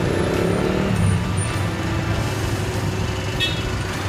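Steady road-traffic noise, a low rumble of vehicles passing on nearby streets.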